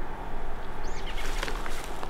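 Outdoor field ambience: a steady low rumble and hiss, with one short bird chirp about a second in and a few faint clicks later on.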